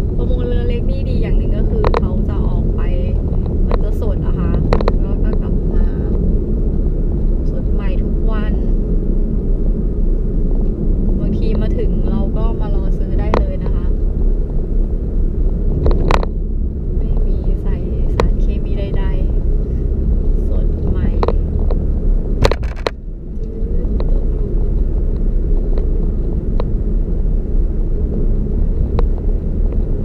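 Car cabin noise while driving: a steady low rumble of engine and tyres on the road, with a few sharp knocks from bumps. Voices are heard faintly at times over it.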